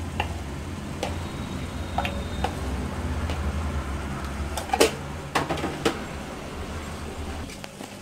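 Salt being added to a steel pot of water from a plastic measuring spoon, with a few sharp taps of the spoon against the pot about five seconds in. A steady low hum runs underneath and dies away shortly before the end.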